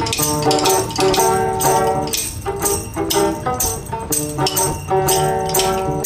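Open-back banjo played in a lively old-time rhythm, with sharp clicks on the beat about twice a second and a voice singing along.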